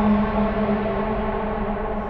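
Ominous background score: a low, held drone chord that slowly fades.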